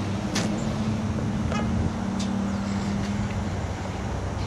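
A car engine running close by: a steady low hum that drops away about three and a half seconds in, over outdoor car-park noise with a few light clicks.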